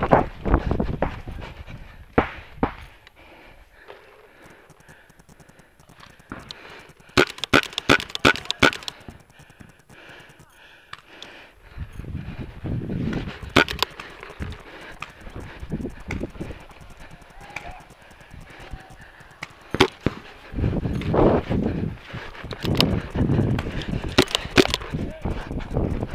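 Pump paintball markers firing: sharp pops, with a quick run of several shots about a quarter of the way in, single shots around the middle and another cluster near the end. Between the shots there are stretches of low rumbling noise and voices.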